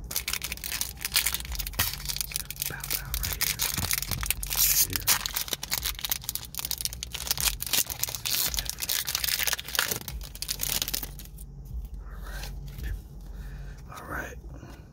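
Foil Pokémon booster pack wrapper being torn open and crinkled by hand: dense crackling of the foil for about eleven seconds, then softer rustling as the cards come out.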